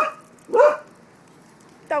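A dog barking twice in quick succession, the second bark about half a second after the first.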